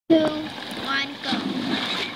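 Splashing swimming-pool water with a child's voice calling out over it.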